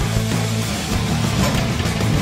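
Loud rock background music with guitar and a steady beat.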